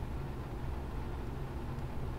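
Steady low background hum (room tone) with no distinct sounds from the watch work.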